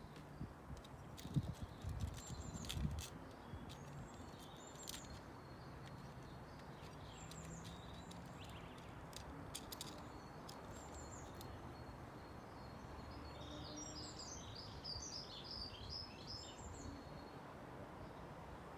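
Small birds chirping over a steady, faint outdoor hiss, with a busier flurry of calls about three-quarters of the way through. A few light clicks and knocks come in the first few seconds as the tools and wooden box are handled.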